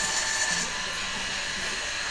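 Steady background hiss with no speech; its source cannot be made out.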